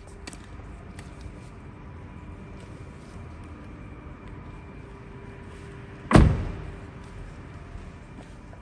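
A 2024 Kia Morning's front car door shut once: a single solid thud about six seconds in, with a few faint handling clicks before it.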